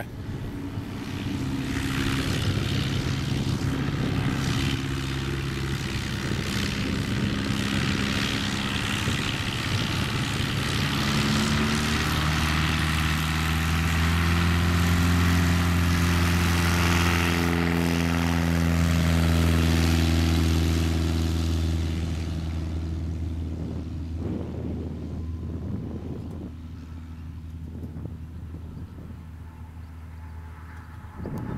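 American Legend Cub floatplane's piston engine and propeller running on the grass, then opened up for the take-off roll: the engine note rises in pitch about a third of the way in and is loudest in the middle, then fades steadily as the plane runs away down the field.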